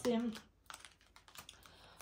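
Light clicks and snaps of tarot cards being handled and drawn from a hand-held deck, a scatter of soft taps after a voice trails off.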